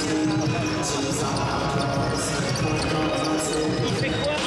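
Basketballs bouncing on a hardwood court, with music playing in the arena and voices in the background.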